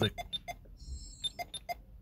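Short, sharp electronic pips: three quick ones near the start and three more a little over a second in, with a faint thin high whine between them.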